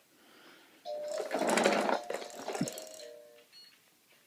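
An electronic baby activity toy going off: a fast plastic rattling whirr over a few steady electronic tones, starting about a second in and dying away after about two and a half seconds.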